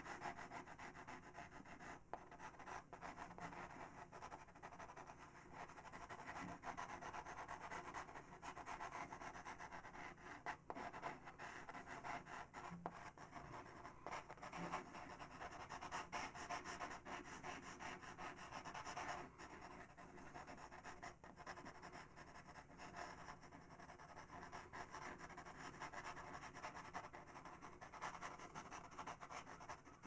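Faber-Castell PITT pastel pencil shading on sanded PastelMat paper: a faint, continuous scratchy rubbing of pencil strokes.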